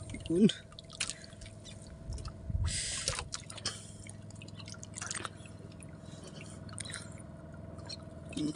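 Water dripping and splashing off a wet fishing handline as it is pulled in hand over hand, with scattered small drips and a brief rush of water about two and a half seconds in. A short grunt-like vocal sound comes about half a second in, over a faint steady hum.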